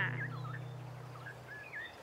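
Faint, sparse bird chirps over a low steady hum that fades away near the end.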